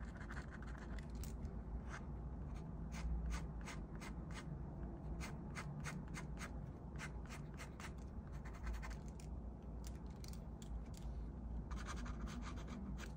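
Ink pen scratching across paper in quick, short hatching strokes, a rapid run of scratches that thins out briefly about nine seconds in before picking up again.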